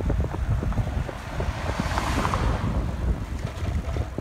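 Wind buffeting the microphone of a camera carried on a moving bicycle: a steady low rumble, with a rushing hiss that swells and fades about two seconds in.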